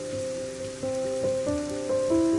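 Leeks and onions sizzling as they fry in a pan, under background music: a slow melody of held notes changing every half second or so.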